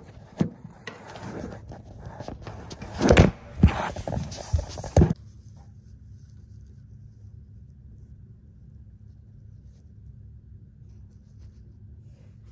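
Handling noise of a phone being set down and positioned: knocks, scrapes and rustles, the loudest a few seconds in. About five seconds in it stops suddenly, leaving only a low, steady room hum.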